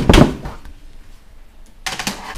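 Side panel of a PC tower case rattling and scraping as it is pulled off, followed by a single sharp knock near the end.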